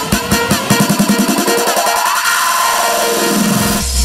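Electronic dance remix building up: the drum hits thicken into a fast roll under a rising sweep, the sound cuts out suddenly just before the end, and a heavy deep bass drop comes in.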